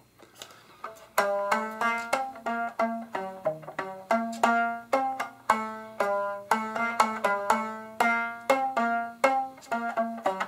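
Rubber bands stretched over a styrofoam box, with chopsticks along its sides lifting the bands off the foam for a purer sound with less buzz, plucked by finger. About a second in, a quick run of clear notes at different pitches begins, each ringing briefly, a couple of notes a second.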